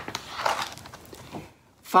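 A page of a hardcover picture book being turned: a brief click, then a soft paper swish.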